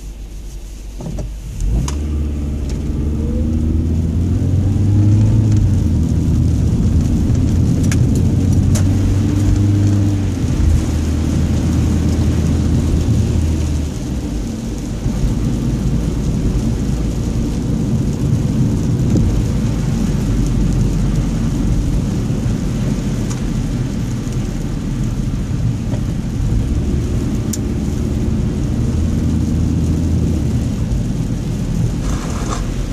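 Car engine and tyre noise heard from inside the cabin as the car pulls away from a stop, the engine note rising for a few seconds about two seconds in, then settling into a steady low drone while cruising on a wet, slushy road.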